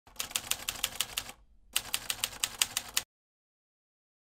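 Typewriter sound effect: two runs of rapid key strikes at about seven a second, each a little over a second long, with a short pause between them. It stops suddenly about three seconds in.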